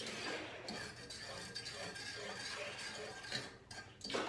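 A utensil stirring sugar and water in a metal saucepan on the stove, with soft scraping and light clinks against the pot as the sugar dissolves into syrup.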